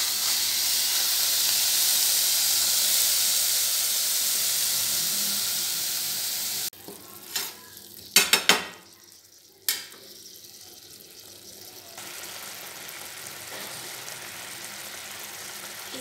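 Coconut, sugar and water mixture sizzling in a nonstick pan as it is stirred and cooked down toward dry. The sizzle cuts off suddenly about six to seven seconds in. A few sharp knocks of the spatula against the pan follow, then a quieter steady sizzle of bubbling sugar syrup.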